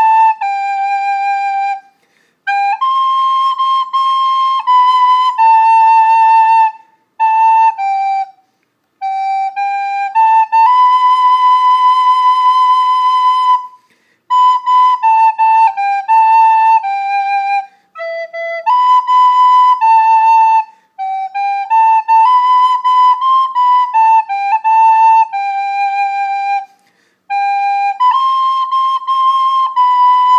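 Soprano recorder playing a slow worship-song melody, one clear note at a time, in short phrases with brief breath pauses between them.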